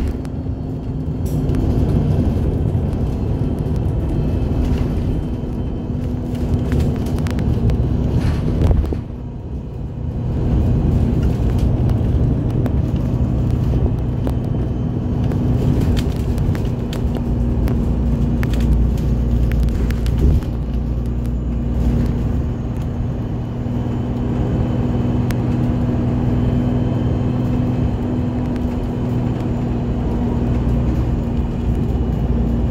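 Bus engine running and road rumble heard from inside a moving bus cabin, with a steady hum and scattered rattles. The noise dips briefly about nine seconds in, then picks up again.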